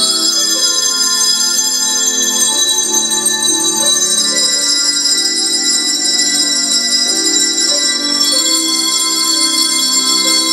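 A group of handbells rung together as a tune, many bell notes sounding at once and ringing on so that they overlap.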